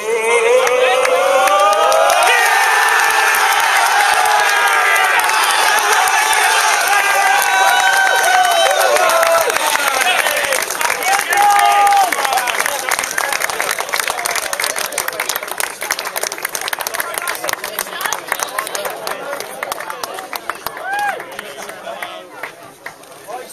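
Crowd of players and supporters cheering and shouting together, many voices at once. After about ten seconds it turns mostly to clapping, which fades toward the end.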